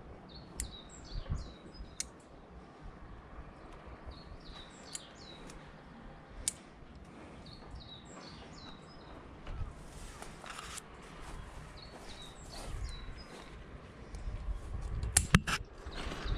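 A small songbird singing a short chirping phrase over and over, about every four seconds. A few sharp clicks come from hand scissors snipping grape shoots, and a couple of louder knocks fall near the end.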